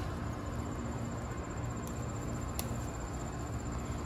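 Steady outdoor garden background: an even low hum with a faint, high, rapid insect trill running through it.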